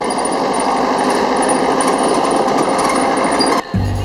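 Steady rushing road noise of a moving vehicle, heard from its open back. The noise cuts off abruptly shortly before the end, and music starts in its place.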